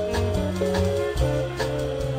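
A small jazz band playing live: held notes from the front-line horns over moving bass notes, with a steady cymbal beat from the drum kit.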